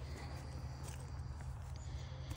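Quiet outdoor ambience with a faint, steady low hum and no distinct event.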